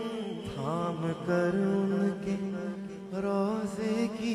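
A man singing a naat with a sliding, ornamented melody over a steady background drone.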